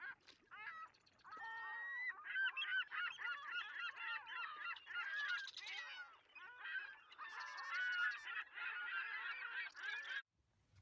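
A flock of gulls calling, with many cries overlapping. A few calls at first, then a dense chorus from about a second in.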